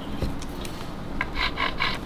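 A pencil scratching along the edge of a thin template laid on a wooden violin mould, marking the outline: three or four quick strokes in the second half, after a soft knock near the start.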